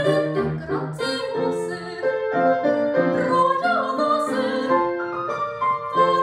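Classical soprano singing an Italian Baroque aria, accompanied by a grand piano.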